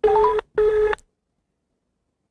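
Telephone ringback tone heard as a call is placed: a double ring, two short steady tones in quick succession. It is the British-style cadence used on Nigerian phone lines.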